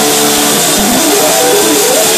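A live rock band led by a loud, distorted electric guitar, backed by bass guitar and drums. Steady held notes open the passage, then the guitar line bends and slides up and down in pitch.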